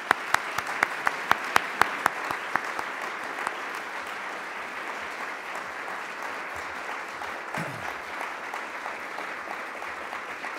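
Audience applauding steadily. Over the first two or three seconds, sharp, loud claps about four a second stand out close to the microphone: one person clapping at the lectern.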